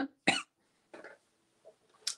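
A woman coughing into her hand: one short cough just after the start, ending a brief coughing fit, then only a couple of faint breaths.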